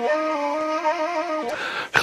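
End-blown cane flute playing a short ornamented melody with trills between notes. The melody stops about one and a half seconds in, followed by a short, breathy burst of noise near the end.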